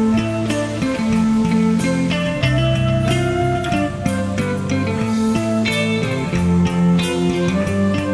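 A power-metal band playing live, without vocals: an electric guitar melody over bass and held chords, with light drum strokes.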